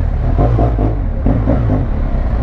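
Big motorcycle engine running at low road speed in traffic, pulling gently, through a de-baffled exhaust with an eliminator fitted.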